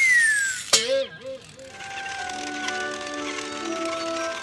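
Cartoon sound effects and music: a falling slide-whistle tone ends about half a second in, a short wobbling pitched sound follows, then background music holds long sustained notes to build suspense.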